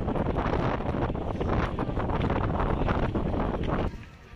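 Wind buffeting the camera's microphone: a loud, irregular rumbling noise that stops abruptly just before the end.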